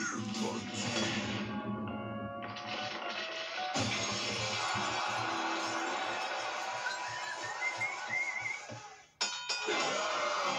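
Cartoon soundtrack of music and sound effects: a sudden crash with shattering debris about four seconds in, then a crowd cheering that breaks in near the end.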